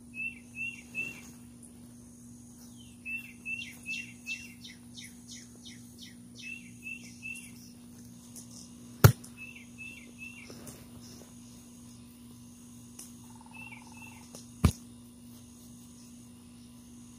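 A bird calling in quick runs of short, falling chirps, three to seven at a time, over a steady high insect drone and a faint low hum. Two sharp knocks, about nine seconds in and near the end, are the loudest sounds.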